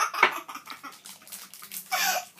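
A young girl laughing, loudest at the very start and again near the end.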